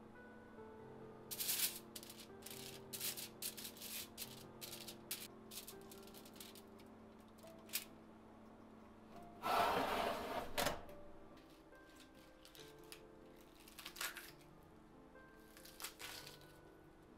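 Aluminium foil crinkling and crackling as it is handled in a stove's fish-grill tray, in a quick run of sharp crackles, then a louder noisy rush lasting about a second around the middle and a few scattered clicks afterwards, over soft background music.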